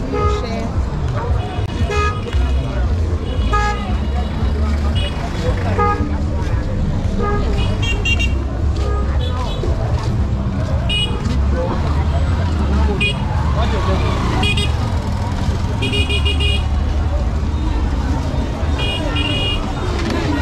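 Busy street-market ambience: many people talking, with car traffic and repeated short, high-pitched horn toots, some in quick runs of several beeps, under a steady low rumble.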